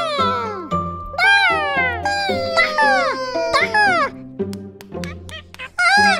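Squeaky, high-pitched cartoon character voices babbling without words, a run of calls that swoop downward in pitch, over light background music with steady held notes.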